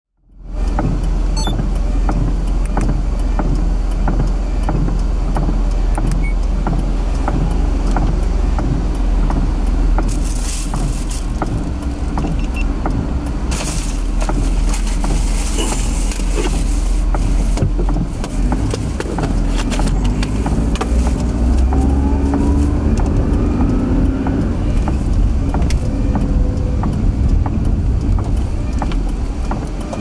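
Car cabin noise in slow traffic on a wet road: steady low engine and tyre rumble. Two brief hisses come about ten and fourteen seconds in, and a gently rising whine builds in the last third as the car gathers speed.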